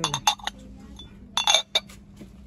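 Glass lid of a pressed-glass sugar bowl clinking against the bowl's rim as it is lifted and set back. There are a few quick clinks at the start and another quick group of clinks a little past the middle.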